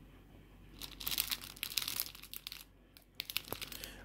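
Bread wrapper crinkling as it is handled, in dense bursts of crackles starting about a second in, with a brief lull shortly before the end.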